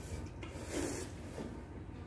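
People slurping thin, starchy cold naengmyeon noodles, with a soft slurp strongest about half a second to a second in.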